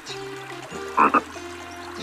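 Cartoon frog croak sound effect: one quick double croak about a second in, over soft background music.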